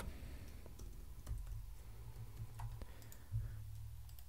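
Faint, scattered key clicks of a computer keyboard, over a low steady hum.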